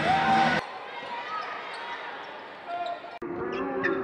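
A basketball being dribbled on a hardwood court during play, under an arena crowd's murmur. Loud arena music in the first half-second cuts off abruptly.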